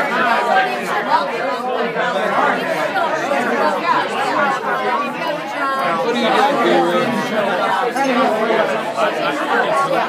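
Many people talking at once: a steady din of overlapping conversation in a crowded room.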